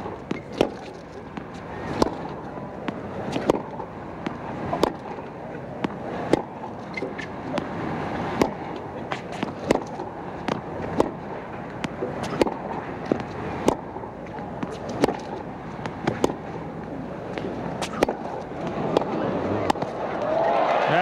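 Tennis ball hit back and forth in a long baseline rally on a hard court: sharp racket strikes and bounces about every second and a half, over steady crowd noise.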